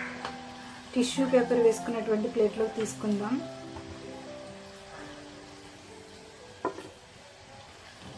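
Rice-and-semolina vadas deep-frying in hot oil in a kadai, a steady sizzle under background music, frying toward golden brown. A single sharp click near the end, a metal slotted spoon against the pan.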